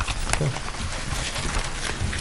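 Steady hiss of room noise in a meeting room during a pause in talk, with a single sharp click about a third of a second in and a brief low murmur of a voice just after it.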